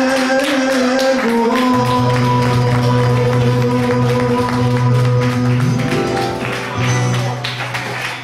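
A small acoustic band playing the closing bars of a Cretan-style song: strummed acoustic guitar under long held notes, with a low held note coming in about two seconds in and a sliding note rising near six seconds.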